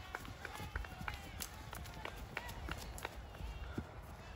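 Running footfalls of several runners on a dirt trail, short irregular thuds a few times a second, with faint voices in the distance.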